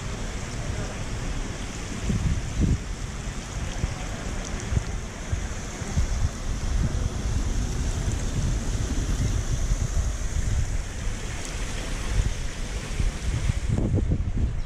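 Wind buffeting an action camera's microphone in a gusty rumble, over a steady hiss of water running across the wide, shallow stone basin of a plaza fountain.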